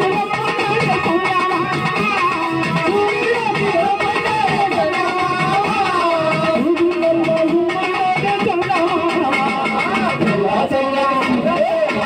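Live folk music for a chekka bhajana dance, with an electronic keyboard playing a continuous melody.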